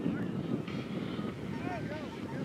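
Wind rumbling on the microphone, with faint distant voices calling out in the second half.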